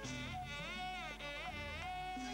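Orchestral interlude of a 1967 Malayalam film song: a high melody instrument slides up and down in pitch in smooth curves over held low bass notes.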